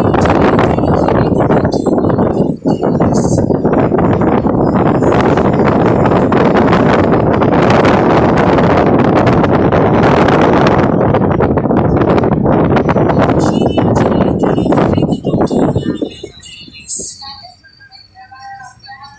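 Heavy wind buffeting the phone's microphone while moving along the road, a loud, even rushing that drops away suddenly about two seconds before the end, leaving a quieter wavering tone of music or a voice.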